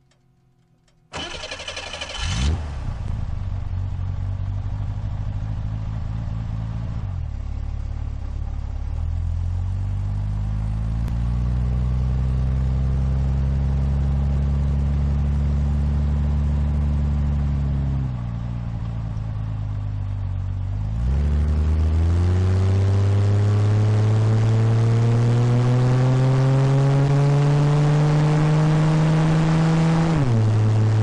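A 1965 Chevrolet Corvair's rear-mounted air-cooled flat-six starts about a second in and then pulls away, loud, picked up close to the exhaust. The engine note climbs, falls back around eighteen seconds, then rises steadily in pitch from about twenty-one seconds until a gear change at the very end.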